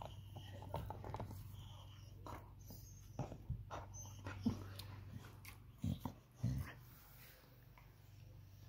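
A dog 'talking': a string of short, low vocal noises, with two louder, deeper ones about six seconds in. A steady low hum runs underneath.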